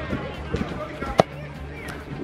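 A football striking hard at the goal end of the pitch, one sharp knock about a second in, over faint background music and voices.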